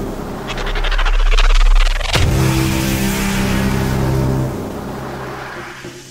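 A car engine sound building over about two seconds with a growing low rumble, ending in a sharp hit. Synth music with steady held notes then comes back in and fades away.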